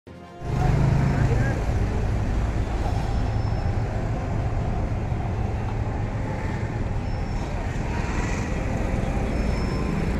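Steady outdoor street noise: a low traffic rumble with indistinct voices of a gathered crowd, starting suddenly about half a second in.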